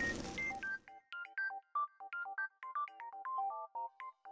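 Background music: a light melody of short, separate chime-like notes. At the start a burst of noise lasting about a second sounds over it, a transition effect as the title text breaks apart.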